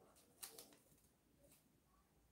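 Near silence, with a faint brief rustle of small paper raffle slips being unfolded by hand about half a second in and again more faintly near the end.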